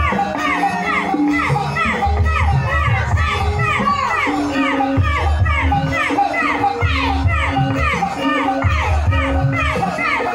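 Loud live music from a gamelan ensemble with a singer, in a lively popular-song style: a regular low drum and bass pulse under held notes, topped by a quick, even run of short falling high notes and voices.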